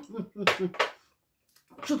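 Only a woman's voice, speaking Russian in two short stretches with a brief pause between.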